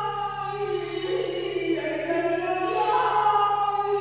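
Music: layered, choir-like sung vocals hold long notes that slide from pitch to pitch over a low steady drone.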